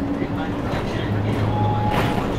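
Inside a moving city bus: a steady engine drone and road rumble heard from the cabin, the low hum swelling slightly in the second half.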